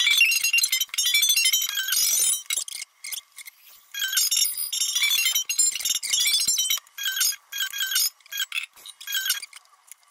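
Archtop electric guitar playing, sped up so the notes come out high and chiming, in several quick runs of notes with short gaps between them.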